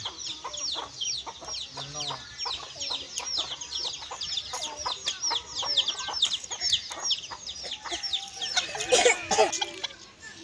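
Chickens calling: a fast, steady run of short, high, falling chirps, with a louder, lower rooster call near the end.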